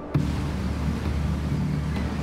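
A crab boat's engine running with a steady low rumble, under a wash of sea water along the hull, starting abruptly just after the start.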